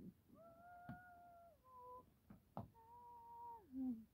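Three long calls, each held on a steady pitch and dropping a step between them, the last sliding down at the end. A few sharp clicks of a plastic DVD case being handled and turned over on a wooden floor are heard among them.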